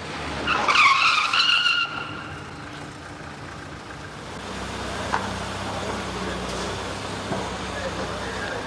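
Car tyres squealing under hard braking: a high screech lasting about a second and a half near the start. A steady low vehicle engine running follows from about halfway through.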